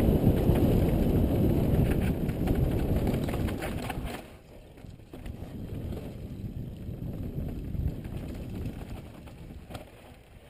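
Wind buffeting the microphone of a helmet camera on a fast mountain bike descent, over the crunch and rattle of the tyres and bike on dry, rutted dirt. The loud wind rumble drops away sharply about four seconds in, leaving quieter tyre crunch and bike clatter with scattered clicks.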